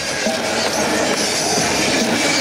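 Loud, overdriven mix of battle music and crowd noise around a krump circle, heard as a dense, steady roar.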